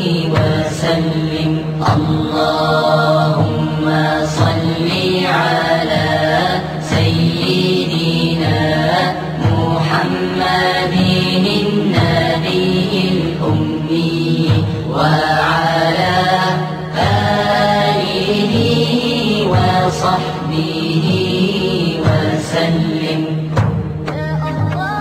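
Islamic devotional chant: a voice singing long, drawn-out melodic phrases over a steady low drone.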